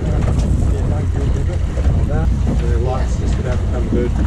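Steady low rumble of wind buffeting the microphone aboard a small boat on open sea, with short voice calls about two and three seconds in.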